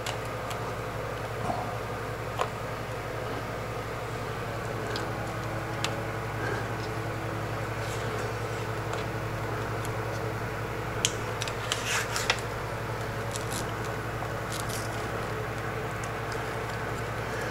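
Faint handling noises, small clicks and rustles of an adhesive LED light strip being positioned and pressed into place by hand, over a steady low room hum. A few clicks stand out, with a short cluster about eleven to twelve seconds in.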